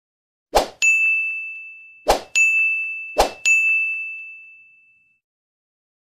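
Electronic ding sound effect, three times about a second and a half apart: each time a brief swish is followed by a bright ringing ding that fades away, the last one ringing longest.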